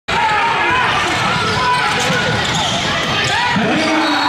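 Basketball bouncing on a hardwood gym court during a game, with players' voices and shouts.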